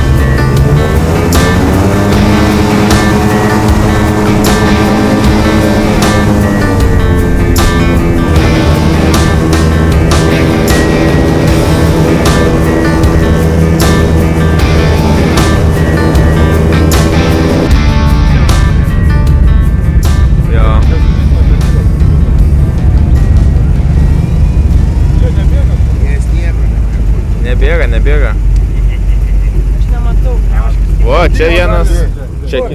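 Airboat engine and propeller running, the pitch of its drone rising in the first couple of seconds and dropping again around six seconds in, under rock music with a steady drum beat. About two-thirds of the way through the music drops out and the engine's low, steady drone carries on, with a voice near the end.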